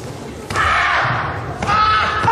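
Two sudden thumps of taekwondo poomsae movements, about half a second in and again past a second and a half in, each followed by a loud, held shout.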